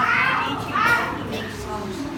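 A high-pitched voice making two sing-song sounds that rise and fall in the first second, then quieter voice sounds.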